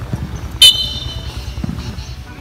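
A sports whistle blown once: a sudden, loud, shrill blast about half a second in that fades out within about a second. It signals the players to stop the high-knee speed drill.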